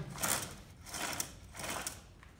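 Three short scraping, clicking bursts of handling noise as the chain tensioner on a Stihl MS 180 C chainsaw is worked by hand.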